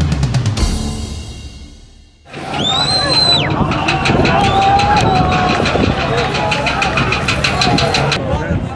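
Driving intro music that fades out over the first two seconds. About two seconds in, street audio of a crowd of protesters shouting cuts in, with a shrill high tone about a second long near the start and a fast, even ticking through the second half.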